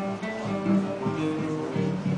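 Nylon-string acoustic guitars playing together, picking out a quick run of plucked notes over chords.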